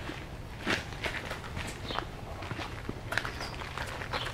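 Footsteps on a gravel path, irregular crunching steps. A few brief high bird chirps come through.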